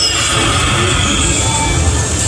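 A Panda Magic slot machine's free-game music and sound effects. A rushing effect at the start fades within about a second as a fireball animation sweeps the reels, followed by a few short electronic tones.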